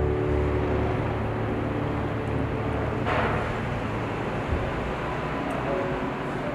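Street traffic ambience: a steady low rumble of car traffic, with a brief hissing swell about three seconds in.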